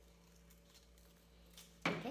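Scissors cutting paper, a few faint snips, then one short, much louder sound near the end.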